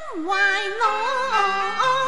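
Cantonese opera (yueju) singing: one voice sways and ornaments a melody line with a sharp downward swoop at the start, over instrumental accompaniment holding steady lower notes.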